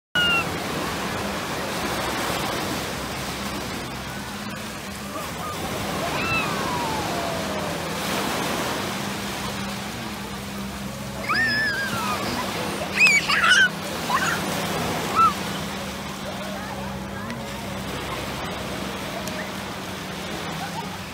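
Shallow sea surf breaking and washing up over the sand in a steady rush. A few high-pitched cries from children break through in the middle stretch.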